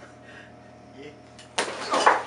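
Faint steady room hum, then about a second and a half in a person's voice breaks in loudly, without words.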